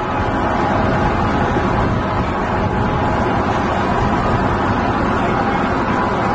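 Steady outdoor street noise picked up by a camcorder microphone: a continuous wash of city traffic and wind on the mic, with no distinct events.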